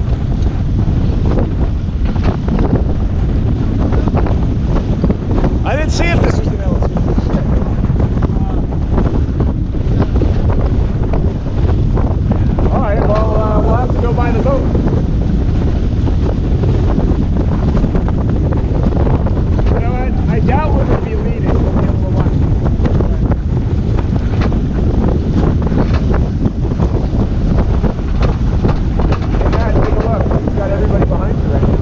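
Heavy wind buffeting the microphone over water rushing along the hull of a racing sailboat heeled over and sailing upwind. Short voices break through a few times.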